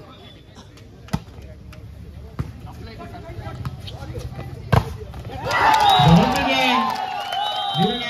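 A volleyball is struck three times in a rally: the serve about a second in, a touch, and a hard spike near the middle, which is the loudest hit. Then players and the crowd break into shouting and cheering as the match point is won.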